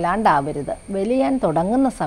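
A woman speaking Malayalam in a steady, explaining voice, with a faint steady high-pitched whine underneath.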